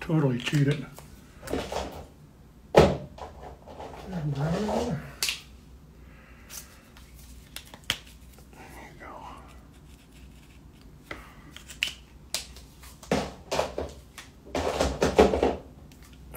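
A man's short wordless vocal sounds, hums and murmurs with a gliding pitch, between scattered small clicks and taps from marker work on paper.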